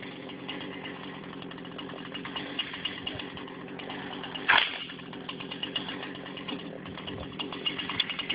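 Husqvarna 240 two-stroke chainsaw idling steadily between cuts. A short, sharp noise stands out about four and a half seconds in.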